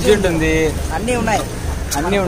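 A man talking, over a steady low rumble of outdoor background noise.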